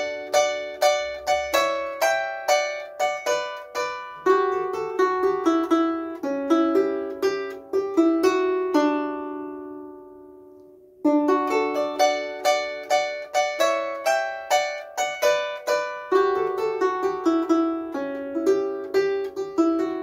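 Harp played slowly, single plucked notes in a steady stream of about three a second, each ringing and dying away. About nine seconds in, the playing stops and the last notes fade for about two seconds before the plucking resumes.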